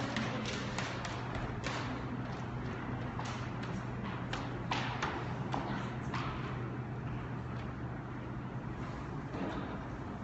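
Scattered, irregular taps and knocks, frequent for the first six seconds or so and then only occasional, over a steady low hum.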